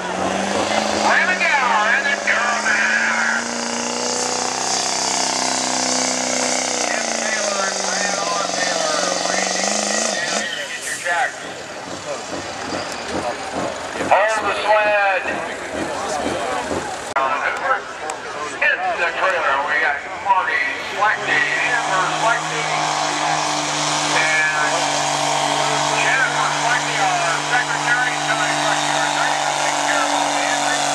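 Diesel pickup engines pulling a sled under full load. A Chevrolet Duramax climbs in pitch and then falls away as its pull ends in the first third. After a stretch of voices, a Dodge Cummins runs at a steady high pitch through the last third.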